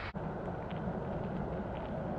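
Steady rushing noise of the river's flowing current, briefly cut off just after the start.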